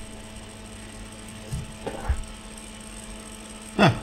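Altair MF-1200 power amplifier powered on, its cooling fans running with a steady hum, and a few faint knocks about two seconds in. One channel is in thermal protection straight after switch-on, which the repairer suspects is a false thermal fault, since nothing could be hot that quickly.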